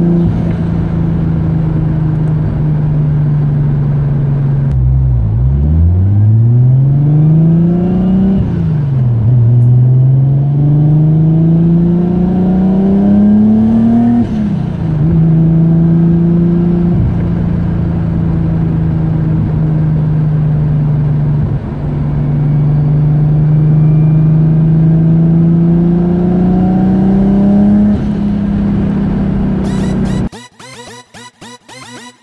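Nissan Skyline R32 GT-R's RB26 straight-six heard from inside the cabin while driving: it cruises at a steady hum, drops low about five seconds in, then pulls up through two gears with a rising pitch, each pull cut by a shift. After that it cruises steadily again, with a small rise in revs near the end.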